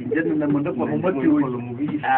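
Several people's voices talking over one another in a room, a continuous murmur of speech with no clear single speaker.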